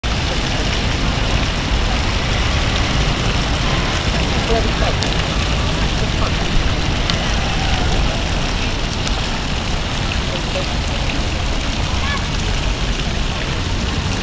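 Steady rushing splash of water from the lion fountains at the obelisk's base, with faint voices of people nearby.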